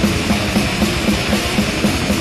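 Instrumental thrash metal passage: distorted electric guitars and a drum kit hammering out a riff with an even pulse of about four beats a second.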